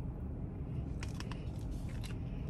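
Quiet eating of ice cream from a fork: a few soft mouth and fork clicks about a second in and again near the end, over the steady low rumble of a car interior.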